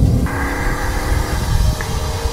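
Turbocharged TVR Chimaera V8 and road noise droning inside the cabin on the move, with electronic music coming in about a quarter second in.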